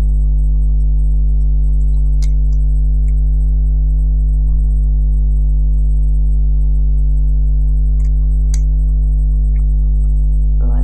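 Loud, steady electrical mains hum with a stack of overtones, unbroken throughout. Two faint clicks stand out, one about two seconds in and one near the end, from hands working a plastic band loom.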